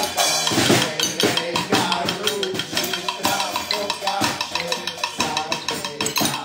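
A small live band playing: snare and bass drum keeping a steady beat, with a melody line over it.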